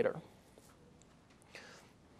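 A man's voice ends a word at the start, then a quiet pause in the room, with a faint soft breath about a second and a half in.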